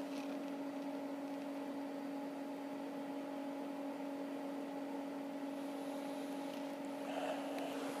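A steady hum at one constant pitch, over a faint hiss, unchanging throughout.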